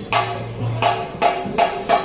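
Percussion music with a steady beat: drum strikes with a ringing after each, about three a second.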